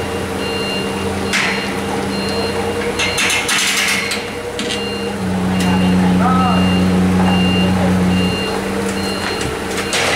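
A CAT 50 forklift's engine running steadily, then working harder for about three seconds from about five seconds in as it moves its load over the ramp. Its warning beeper sounds about once a second throughout.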